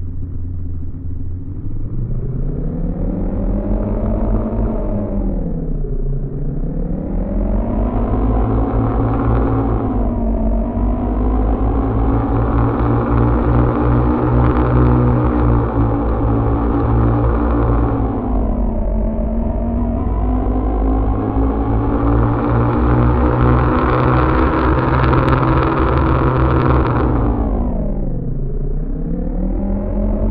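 Synthetic futuristic engine sound made by layering two AudioMotors plug-in instances, an engine recording driven through the plug-in together with a pitched synthetic texture. It revs up and holds high, then falls in pitch and climbs again, with dips about six and nineteen seconds in and again near the end, over a steady low drone.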